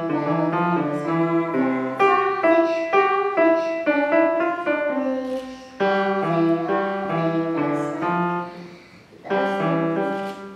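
Grand piano playing a simple children's tune in short note-by-note phrases, with brief breaks about five and a half seconds in and again near the end.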